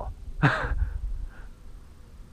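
A man's short, breathy laugh about half a second in, trailing off into faint breaths, over a steady low rumble.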